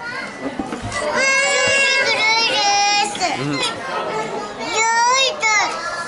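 Young girls' high-pitched voices and laughter, with long squealing calls about a second in and again near the end.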